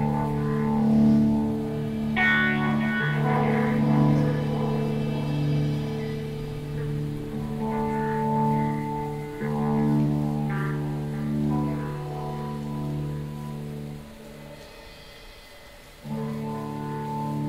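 Slow instrumental band passage: guitar notes played through effects, ringing out over sustained low notes, with a new plucked note every second or two. The music drops to a quieter stretch about fourteen seconds in.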